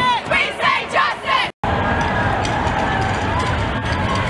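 A crowd of marchers chanting in quick rhythmic syllables, cut off suddenly about one and a half seconds in. It gives way to a steady crowd and street din with a low rumble.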